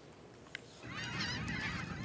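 A flock of waterbirds calling, many short overlapping calls starting about a second in, after a near-silent start with one faint click.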